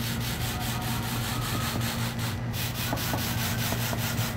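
Metal-bladed pet hair remover scraped in quick, rapid strokes over a cat tree's fleece carpet, about five strokes a second, dragging up cat hair. A steady low hum runs underneath.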